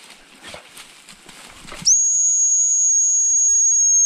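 Rustling and footsteps in long grass, then, about two seconds in, one long steady blast on a high-pitched gundog whistle, held level for over two seconds and cut off sharply.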